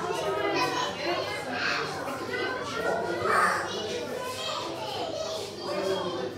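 Children's voices chattering and calling in a large indoor room, with one louder high-pitched call a little past halfway.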